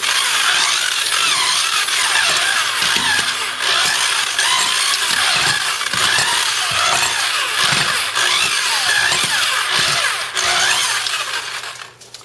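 Power drill spinning a pork-shredding attachment of smooth stainless steel pins through cooked pork in a stainless steel stockpot. The motor's pitch rises and falls as the trigger is worked in a few hits, with knocks and scraping from the attachment in the pot, and it winds down just before the end.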